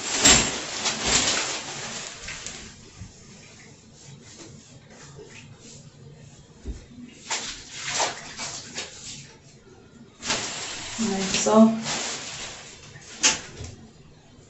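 Hand-cleaning in a bathtub: irregular bursts of rubbing and splashing noise, loudest in the first two seconds and again from about ten seconds in, with a brief vocal sound about eleven seconds in.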